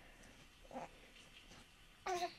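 A newborn baby's single short, soft coo about three quarters of a second in; otherwise near silence.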